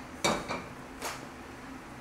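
Saucepan set down on a gas stove's grate with a clank about a quarter second in, followed by a lighter metal clink about a second in.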